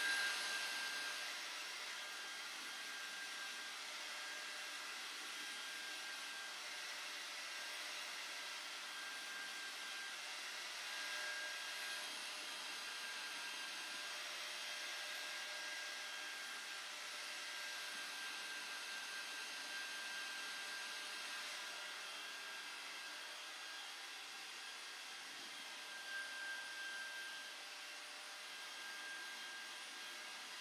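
Hand-held hair dryer blowing steadily: a constant rush of air with a faint high whine, swelling a little as it is moved about near the hair.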